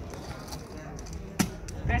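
A single sharp clack about one and a half seconds in: an inline skate landing on a stone step.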